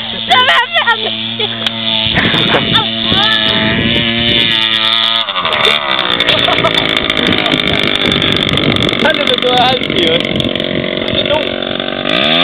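Motor scooter engine running at a steady pitch. About five seconds in its note drops as it slows, then it holds steady at the lower pitch.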